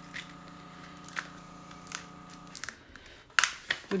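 A water cooler humming steadily, a low hum with a higher whine above it, that cuts off a little over halfway through. Light taps and rustles of transfer tape and paper being handled on a table, louder near the end.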